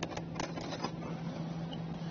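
A few faint light metallic clicks in the first second as a small nut is started by hand on the threaded post of a 12-volt circuit breaker, over a steady low hum.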